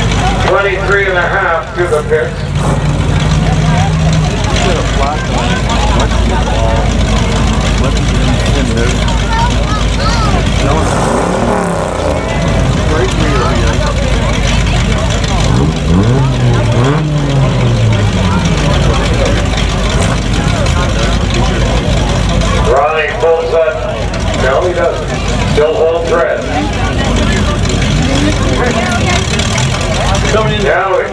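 Enduro stock cars' engines running around the track, a loud, dense rumble; about midway one engine's pitch rises and falls a few times as it revs. Voices are mixed in near the start and again late on.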